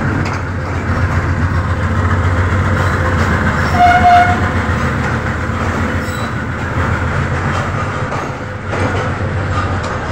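Passenger train coaches rolling past along the platform, a steady low rumble with fast rail clatter. A short high-pitched tone sounds once about four seconds in, the loudest moment.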